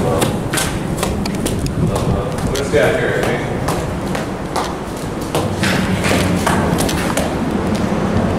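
Strong wind buffeting the camera microphone with a low rumble, over footsteps and knocks climbing stone stairs.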